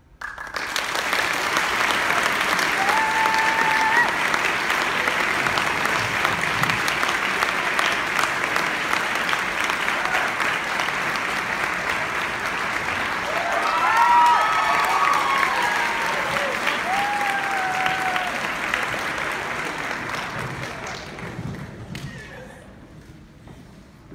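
Audience applause starting at once and going on for about twenty seconds, with a few high cheering voices, swelling about two-thirds of the way through and fading near the end.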